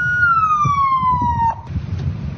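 An emergency vehicle siren: one tone held steady, then sliding down in pitch for about a second before cutting off, over street noise.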